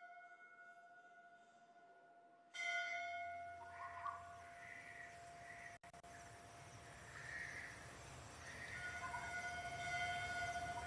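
Quiet opening music of a film's soundtrack: a long held tone with overtones that grows louder about two and a half seconds in, joined by a low rumble and wavering higher sounds.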